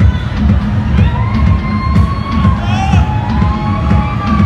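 Techno played loud over a club sound system, heavy bass, with the crowd cheering over the music. A few drawn-out gliding high tones rise and fall through the middle.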